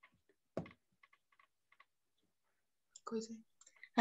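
A single knock about half a second in, followed by a few faint clicks, picked up by a microphone on a video call; near the end a person's voice starts briefly, just ahead of speech.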